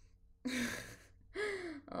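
A woman's two breathy vocal sounds: a short gasp-like breath about half a second in, then a sigh whose pitch falls.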